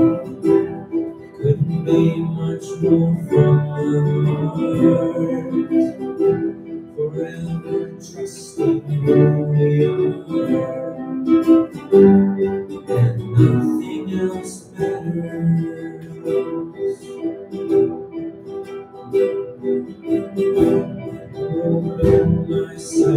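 A small school ensemble playing live instrumental music, with plucked guitars prominent.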